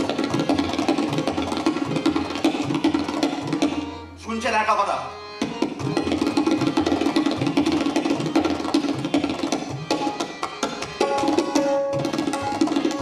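Tabla solo played at speed: a dense, rapid stream of strokes on the dayan and bayan. About four seconds in, the strokes stop briefly under a low ringing tone, then the fast playing resumes.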